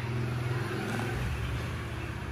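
Steady low motor hum, with a deeper rumble coming in about a second in.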